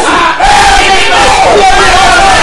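A man shouting in fervent prayer, very loud. It breaks off briefly about half a second in, then goes on as one long held shout that slowly falls in pitch.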